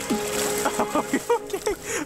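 A hooked northern pike thrashing and splashing at the water's surface, over background music with a held note.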